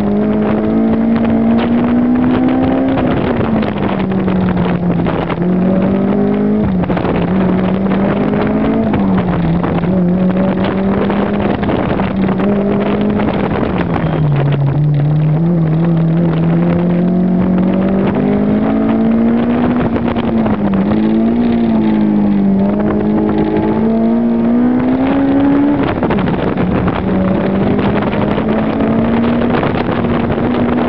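Car engine heard from inside the cabin during an autocross run, its revs climbing and dropping again and again as the driver accelerates and lifts off, over steady wind and road noise. The revs fall to their lowest about halfway through, then rise in several quick steps before a sudden drop near the end.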